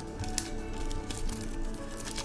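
Soft background music with light crinkling and clicks from a foil Pokémon booster-pack wrapper being handled.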